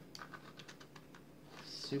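A quick run of faint, light clicks and ticks from a hand shuffling a small stack of HeroClix cards, ending about a second and a half in.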